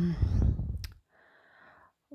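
A pause in a woman's speech: a breathy exhale with a low rumble, then a single sharp click a little under a second in, then a faint quiet stretch.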